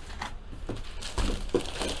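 Handling of a cardboard box and a jersey sealed in a clear plastic bag: scattered scrapes, rustles and plastic crinkles as the jersey is lifted out.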